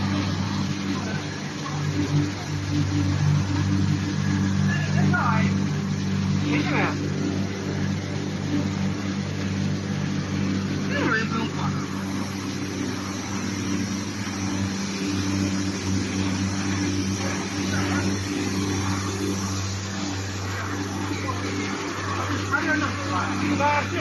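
A single facer corrugated cardboard production line running with a steady low machine hum made of several held tones; part of the hum changes about halfway through.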